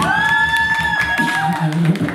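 Beatboxing into a handheld microphone: a high, pitched vocal tone that slides up and is held for about a second and a half, over low, rhythmic bass sounds.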